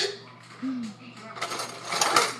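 A sharp clink of kitchenware right at the start, then quieter handling noise, with a short hum of a child's voice near the middle.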